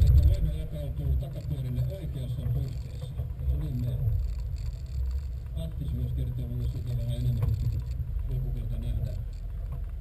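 2001 Chevrolet Corvette's LS1 V8 idling steadily after a loud rev dies away in the first second, heard from inside the open convertible, with faint voices over it.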